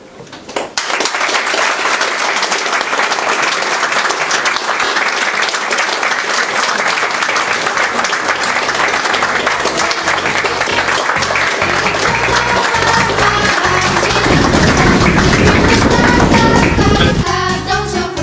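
Audience applauding, a dense steady clapping that starts about a second in. Music fades in underneath during the second half and takes over near the end.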